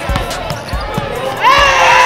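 A basketball dribbled on a hardwood gym floor, several bounces, then about one and a half seconds in a crowd breaks into loud cheering and shouting.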